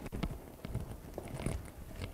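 Footsteps with scattered light knocks and taps at irregular spacing, as a person walks up to the lectern and handles papers.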